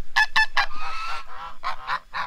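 A flock of domestic geese honking in a quick run of short calls, with one longer call in the middle.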